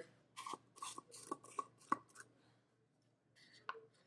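A quick run of faint clicks and light rustles from small objects being handled close to the microphone, then a short lull and a single click near the end.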